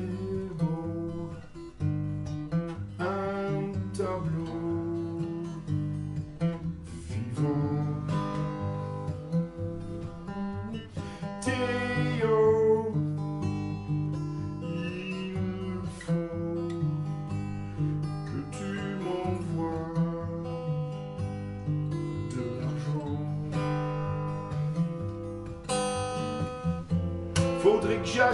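An acoustic guitar played as accompaniment to a song, with chords strummed and notes picked in a steady rhythm.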